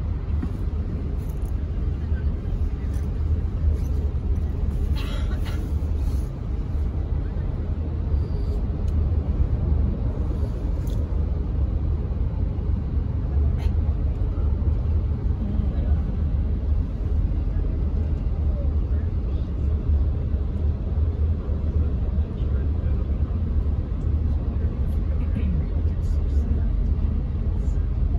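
Steady low road and engine rumble inside a moving vehicle's cabin as it drives along city streets and over a bridge.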